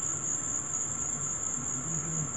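A steady, high-pitched background whine with no clicks or other events over it.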